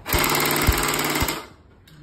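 Motorized toy blaster firing on full auto: a fast, even mechanical rattle that lasts about a second and a half and stops abruptly.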